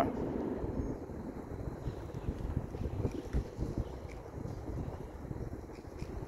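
Wind buffeting the microphone: a low, unsteady rumble over a faint outdoor hush, with no distinct events.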